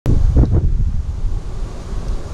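Wind buffeting the microphone outdoors: a steady, gusting low rumble.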